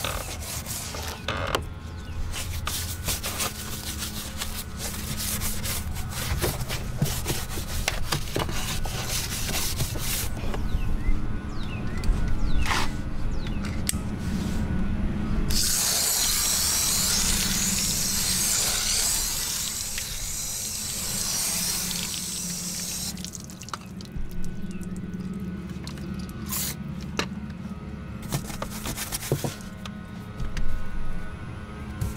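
Detailing brush scrubbing a muddy painted-metal truck door jamb with quick, scratchy strokes. About halfway through, a garden hose spray nozzle rinses the jamb with a loud, steady hiss for about eight seconds, and then scrubbing resumes. Background music plays underneath.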